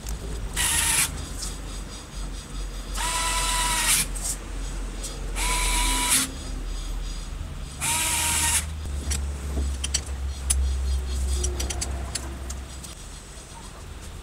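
Compressed-air blow gun giving four short blasts of about a second each, each a hiss with a whistling tone, blowing out the bolt holes of an electric planer's cutter drum. A low hum runs underneath.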